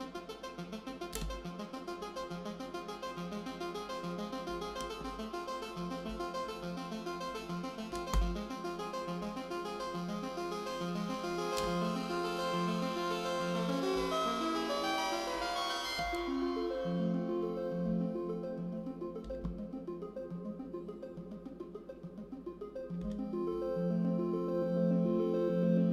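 Critter & Guitari Pocket Piano synthesizer improvised on in a quick, steady stream of short notes. About two-thirds of the way through, the tone grows brighter and then suddenly turns duller. A single knock sounds about a third of the way in.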